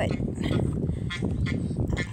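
Wind rumbling on the microphone, with footsteps on gravel as the camera person walks.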